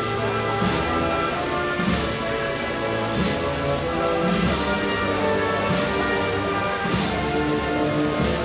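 A procession wind band playing a slow march, with sustained brass and wind notes and a bass drum and cymbal stroke about every 1.3 seconds.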